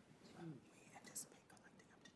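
Near silence: room tone with faint whispered voices.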